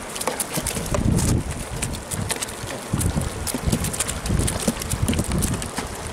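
Live whiteleg prawns (Litopenaeus vannamei) flicking their tails in a heap in a plastic crate: many scattered sharp clicks and taps, with low wind rumble on the microphone.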